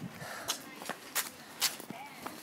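Footsteps of someone walking with a handheld phone: a few separate knocks about half a second apart.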